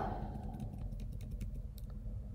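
Typing on a computer keyboard: scattered, faint key clicks while a text-editor configuration file is being edited.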